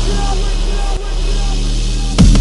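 Drum and bass track in a passage without drums: a steady low bass drone under a short synth note repeating about twice a second, with a brief dip in level about a second in.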